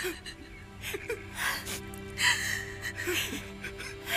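Voice-acted weeping: several people sobbing and gasping in broken bursts over sustained, sad background music.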